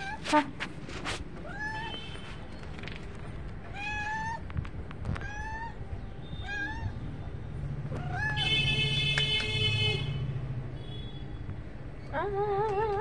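A calico cat meowing about five times, short calls that rise in pitch. A few sharp clicks sound in the first second, and a louder steady hum with a high whine comes in between about eight and ten seconds in.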